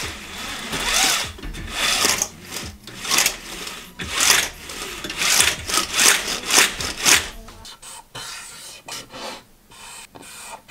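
Marker scratching across cardboard in a run of short, quick rasping strokes as lettering is drawn. The strokes thin out and grow fainter over the last couple of seconds.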